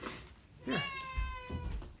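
A cat meowing once, a drawn-out meow of about a second that falls slightly in pitch.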